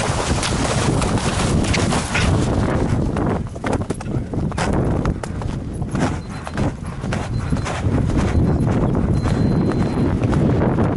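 An eventing mare galloping cross-country over grass: a steady run of hoofbeats, heard from the rider's helmet camera.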